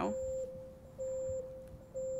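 Electronic countdown-timer tone: a single steady mid-pitched beep that swells in pulses about once a second, each about half a second long.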